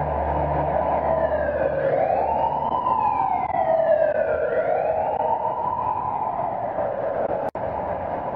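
A siren wailing, rising and falling in pitch twice over a steady rushing background, as a low drone fades out in the first two seconds. The sound cuts out for an instant near the end.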